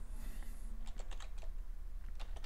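Typing on a computer keyboard: a quick run of separate keystroke clicks as a filename is typed.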